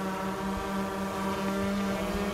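DJI Mavic 2 Pro quadcopter hovering close by, its four propellers giving a steady buzzing hum with many overtones.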